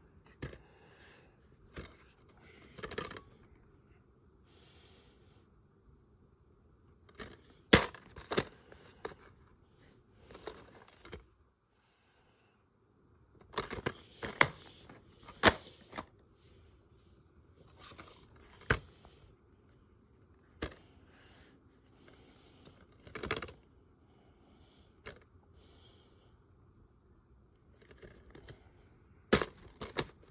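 Plastic DVD cases being handled: scattered clicks, taps and scrapes, the sharpest in clusters about eight seconds in and midway, with a case clicking open near the end.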